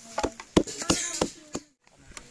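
A handful of sharp knocks on a wooden board, about three a second, as hands work a folded flatbread, under a voice speaking faintly.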